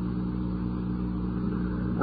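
Steady low hum with a faint hiss above it: the background noise of an old audiocassette lecture recording.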